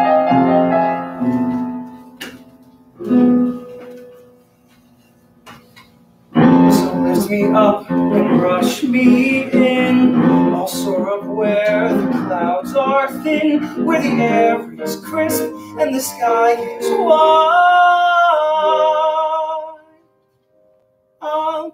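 Live musical-theatre number: a few piano chords ring out and fade, then after a short pause the piano starts a busy accompaniment about six seconds in and the cast sings, ending on held notes.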